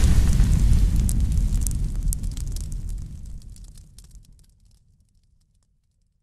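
Cinematic boom-and-fire sound effect for a burning logo animation: a deep rumble with scattered crackles, fading away over about four seconds.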